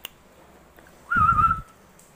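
A single short whistled note about a second in, lasting about half a second and wavering slightly in pitch, with a low blowing rumble under it.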